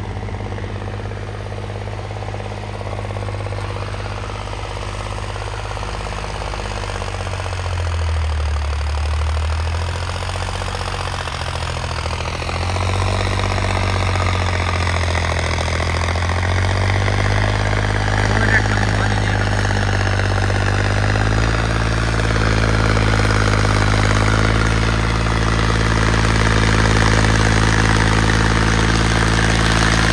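John Deere tractor's diesel engine running steadily under load while pulling a cultivator through ploughed soil. The engine note shifts about a third of the way in and grows louder through the second half as the tractor comes closer.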